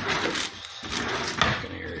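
Stainless steel bowl being handled on an electric coil stove burner: scraping and rubbing noise, with a sharp knock about one and a half seconds in.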